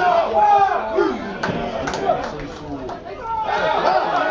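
Men's voices shouting and calling out across a football pitch during open play, with a few sharp knocks around the middle.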